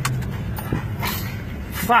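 Cabin noise of a car being driven through a burning roadside: a steady rushing noise over a low engine hum, with a few sharp knocks, and a shouted voice right at the end.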